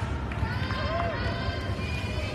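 Indistinct voices and chatter of players and spectators echoing in a gymnasium, with short squeaks of sneakers on the hardwood court as players move.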